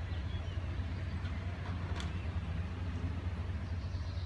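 Low, steady rumble of an idling vehicle engine, with one sharp click about halfway through.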